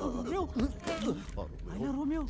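Animated characters' voices: a run of short vocal sounds, each rising and falling in pitch.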